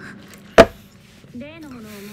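A single sharp knock about half a second in: a plastic drink cup with a straw set down on a hard surface. A voice speaks near the end.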